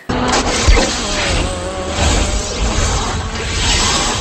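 A loud, dense rumbling roar with music beneath it, from an edited-in film-style clip, starting abruptly.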